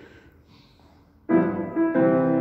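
A moment of quiet, then a grand piano starts playing a tune just over a second in, opening with a full chord and going on with sustained notes.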